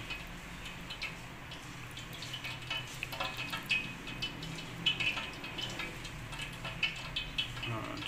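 Wet squelching of a bread slice being pressed and turned by hand in thick gram-flour batter in a steel bowl, over irregular light crackling of hot cooking oil.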